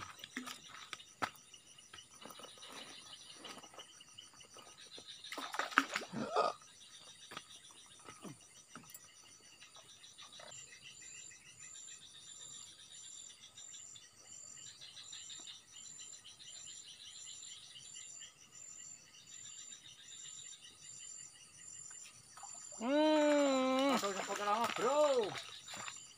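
Insects chirping steadily in the background, high and thin, joined by a regular pulsing chirp from about ten seconds in. A brief louder noise about six seconds in, and a person's voice calling out, wavering in pitch, near the end.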